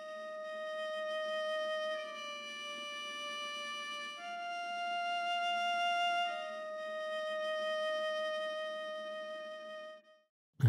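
Sampled solo viola heard through a microphone placed inside the instrument's body, playing a soft sustained line of four long bowed notes. The line steps down, then up, then back to the first pitch, each note lasting about two seconds. A breathy layer of bow noise sits under the notes.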